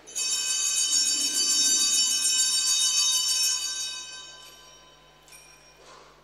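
Altar bells, a cluster of small handbells, shaken in a fast jingling ring for about four seconds and then dying away, with two short shakes near the end. They are rung at the elevation of the consecrated host during the Mass.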